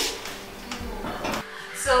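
Faint knocks and scrapes of a metal cooking pot being handled and set down on a gas stove's grate. A woman starts speaking near the end.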